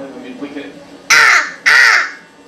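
A young child loudly imitating an animal: two harsh, shouted calls in quick succession, each about half a second long, starting about a second in.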